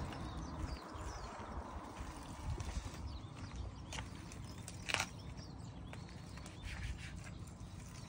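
Outdoor ambience: a steady low wind rumble on the microphone, with a few faint, short bird chirps and two sharp clicks about four and five seconds in.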